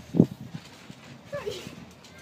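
A loud dull thump just after the start, followed by a few softer knocks. Past the middle comes a short vocal sound that falls in pitch.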